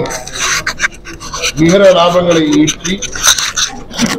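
A man speaking into press microphones in short phrases with pauses. A rasping, hissing noise fills the first second or so before his next phrase.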